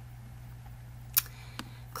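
Computer mouse clicking: one sharp click a little over a second in and a softer one shortly after, over a steady low electrical hum.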